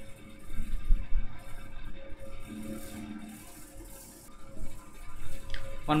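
Stylus writing on a tablet, picked up by the recording microphone: irregular scratching strokes and light knocks, loudest about a second in, over a steady faint electrical hum.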